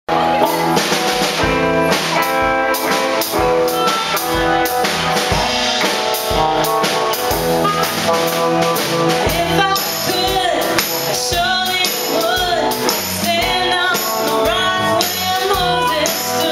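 Live rock band playing: a drum kit keeping a steady beat under electric guitars, with a singing voice coming in about ten seconds in.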